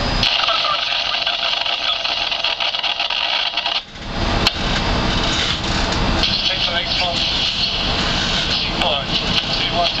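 Tour boat under way, its motor and water noise under a steady hiss. A deeper rumble comes in about four seconds in, and indistinct voices run underneath.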